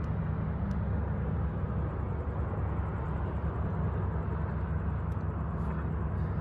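Gas mini bike's small engine running at a steady speed while riding, under a steady hiss of wind and road noise.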